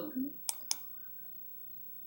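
Two quick, sharp clicks of a computer mouse about half a second in, about a fifth of a second apart.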